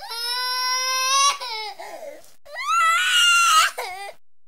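A young man wailing in acted crying as if hurt after a bike fall: two long, high wails, the second starting about two and a half seconds in, with a short broken sob between them.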